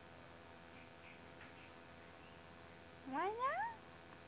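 Quiet background for about three seconds, then near the end a woman's high, sing-song baby talk, one short phrase whose pitch sweeps upward.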